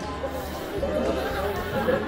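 Several students talking over one another: a babble of young voices in a room.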